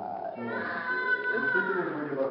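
Newborn baby crying: one long, high wail that starts about half a second in and holds to the end.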